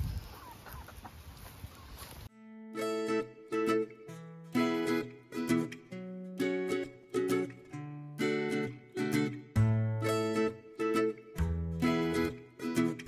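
Background music: a light plucked-string tune, ukulele-like, over a bass line. It comes in suddenly about two seconds in, after a short, quieter stretch.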